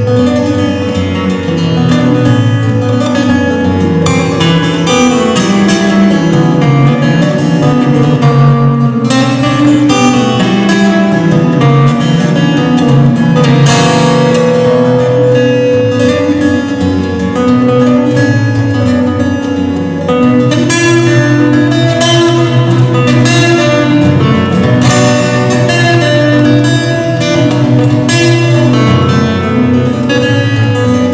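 Solo acoustic guitar playing an instrumental: a steady run of plucked notes over a moving bass line.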